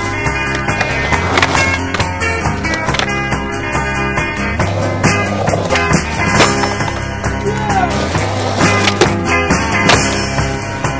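Music playing over skateboarding sounds: wheels rolling on concrete and several sharp clacks of boards popping and landing.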